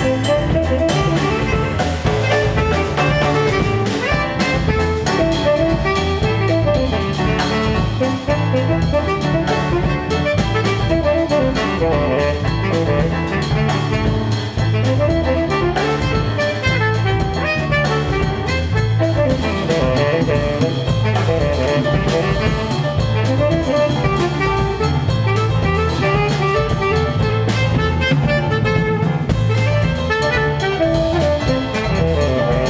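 Live jazz-samba band playing: a tenor saxophone solo over piano, bass guitar and a drum kit keeping a steady samba groove.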